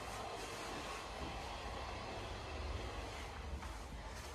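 Quiet room tone: a low, steady background rumble with a faint hiss and no distinct events.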